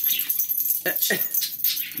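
Siberian husky scratching itself with a hind leg, its collar tags jingling in quick, rapid shakes. A brief falling voice sound comes about a second in.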